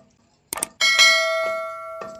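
Two quick knocks of a wooden pestle on a stone mortar, then a bell-chime sound effect that rings out about a second in and slowly fades. The chime plays with the subscribe-button notification-bell overlay.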